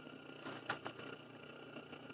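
Faint steady electrical hum from the mains-energised BiTT transformer and rotoverter motor rig, with a few light clicks around half a second to a second in.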